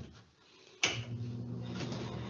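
A switch clicks about a second in, and the ceiling bathroom exhaust fan starts up at once, running with a steady motor hum and airy whir that is making a lot of noise.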